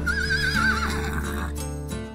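A horse whinnying: one wavering call in the first second that tails off slightly downward, over background music.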